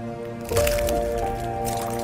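An eggshell cracking and crunching, starting suddenly about half a second in, over a film score of steady held tones.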